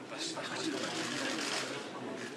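Indistinct low conversation of a small group of people in a room, with a few soft clicks over it.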